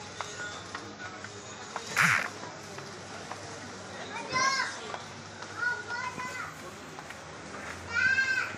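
Background voices in a shop, with short high-pitched calls about four and six seconds in over a steady low hum. There is a brief hiss about two seconds in.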